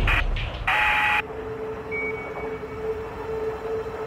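Duct tape pulled off the roll in quick rasping rips, then a steady low drone tone with a short high beep about two seconds in.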